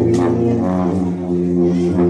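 Sousaphones sounding loud, held low brass notes that step up to a higher pitch about half a second in.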